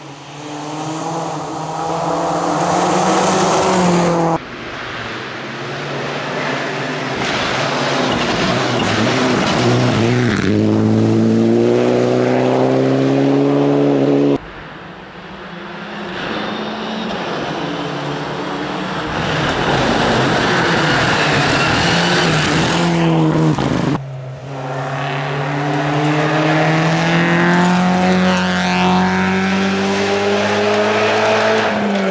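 Rally cars at full throttle on a loose gravel stage, the engines revving high with the pitch climbing and dropping at each gear change. There are four separate passes joined by cuts, each growing louder as the car approaches.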